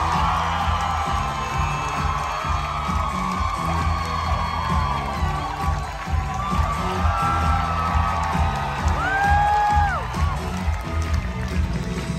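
Amplified pop music with a steady pulsing bass beat over a theatre audience cheering and whooping, one high whoop standing out near the end.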